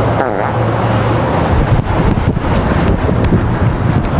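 Busy city street traffic noise, a steady roar of passing cars, with wind buffeting the microphone.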